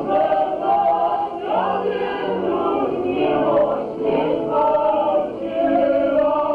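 A group of men and women singing together, a Polish highlander (góral) folk song, with long held notes.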